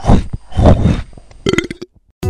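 Deep, rough monster growl sound effect for a rock monster: two rumbling growls in the first second, then a brief higher-pitched sound near the end.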